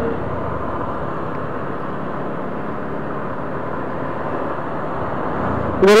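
Motorcycle riding at low speed, a steady mix of engine and road noise recorded by a handlebar-mounted action camera.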